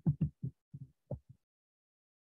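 Short, quiet, broken fragments of a man's voice during the first second or so, then silence.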